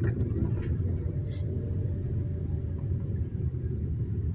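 Steady low rumble of a tour bus on the move, heard from inside the cabin: engine and road noise.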